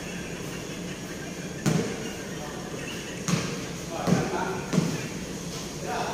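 A basketball bouncing on a hard court: about four separate, uneven thuds during play, with players' voices calling out in the background.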